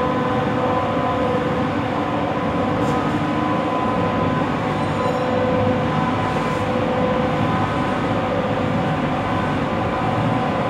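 Workshop machinery running steadily: an electric motor's even hum with a steady whine over a low rumble, unchanging throughout.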